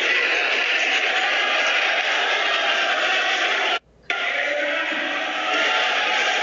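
Basketball arena crowd din with music over it. The sound drops out completely for a split second about four seconds in, then comes back.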